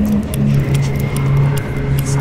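Riddim dubstep track: a heavy sustained synth bass that drops to a lower note about half a second in, under quick, evenly spaced hi-hat ticks and a thin held high tone.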